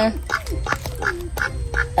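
A duck quacking in a quick series of short calls, about three or four a second, with soft voices underneath.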